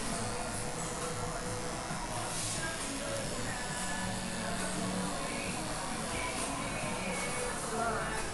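Background music and indistinct voices, with the hum of electric hair clippers being run over a child's head.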